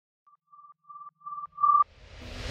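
Electronic beep sound effect: a run of about five short tones at one pitch, each louder and longer than the last, cutting off sharply near the end.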